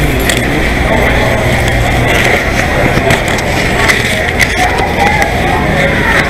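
Indistinct voices of people nearby over steady rustling and handling noise on the moving camera's microphone, with scattered small clicks.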